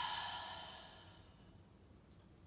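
A woman's long breathy exhale through the mouth, a deliberate sigh after a full in-breath, fading out over about the first second and a half; faint room tone after.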